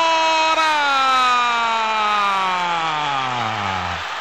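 Radio football commentator's long, drawn-out shout, held on one note and then sliding steadily down in pitch over about three seconds, marking a missed penalty.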